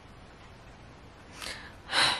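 A woman's audible breaths in a pause of talk: a faint breath about one and a half seconds in, then a louder intake of breath near the end, with quiet room tone between.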